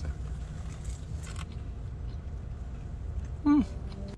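Steady low rumble of a car cabin on the move, with faint chewing sounds as a man eats a slice of pizza. Near the end he gives one short, falling "mm" of approval.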